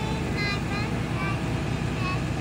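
Steady low rumble of a school bus's engine idling, with faint voices over it.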